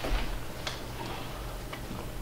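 A few light, irregularly spaced clicks and taps over a steady low hum.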